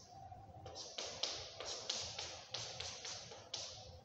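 Chalk drawing on a blackboard: a quick run of about a dozen short scratchy strokes and taps, starting just under a second in.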